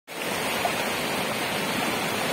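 Steady rushing of a fast, muddy river running high, its turbulent water breaking into whitewater over rapids.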